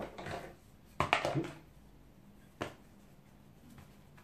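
A few light clicks and a brief swish of a paintbrush being worked in a metal watercolour paint tin: one click about a second in with a short scrub after it, another single click later, and a faint tap near the end.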